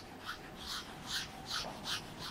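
A whiteboard eraser rubbed back and forth across the board: quiet, evenly repeating rubbing strokes, about two to three a second.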